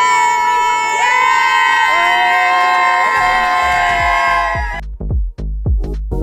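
A group of women cheering with long, held whoops, several voices overlapping. Near the end this cuts suddenly to electronic music with a steady drum-machine beat.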